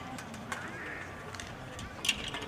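Birds chirping outdoors over a faint murmur of voices, with a few small clicks and no music playing.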